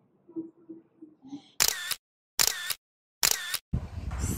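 Camera shutter clicking three times, evenly spaced a little under a second apart, each click the same, then a sudden rush of noise near the end.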